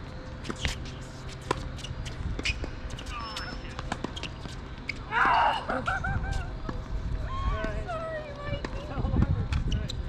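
Tennis rally on a hard court: a string of sharp racket strikes and ball bounces. About five seconds in there is a loud, short sound with a sliding pitch.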